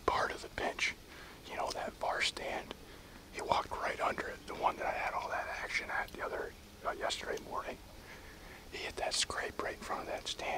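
A man whispering close to the microphone, in short broken phrases.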